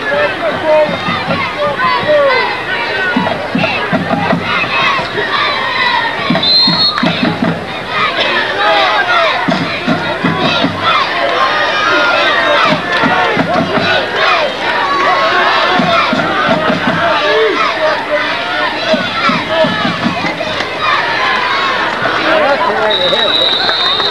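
Football crowd in the stands shouting and cheering, many voices overlapping, with short bursts of low rhythmic thumping recurring every three seconds or so.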